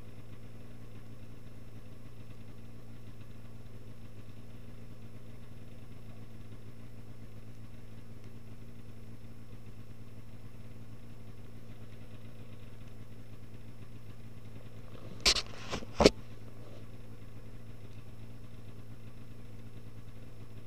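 Snowmobile engine idling steadily, with two sharp knocks close together about fifteen seconds in.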